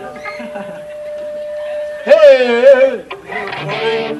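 A man's long, wavering yell into a PA microphone about two seconds in, the loudest sound here, after a steady held tone; a rougher shout follows near the end.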